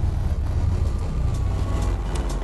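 Deep, steady rumbling sound effect of a TV show's animated logo bumper, with a few faint clicks.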